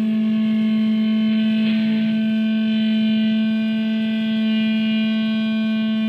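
Electric guitar (Epiphone Emily the Strange G310) holding one long sustained note through a small amplifier, steady and not fading.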